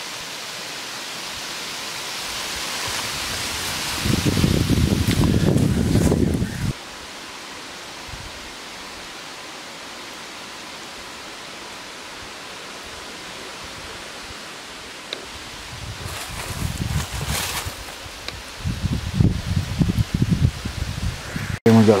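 Steady outdoor background hiss, with a louder low rumble from about four seconds in that cuts off sharply just before seven seconds.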